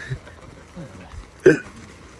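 A person's short, sharp vocal outburst about one and a half seconds in, over faint background voices.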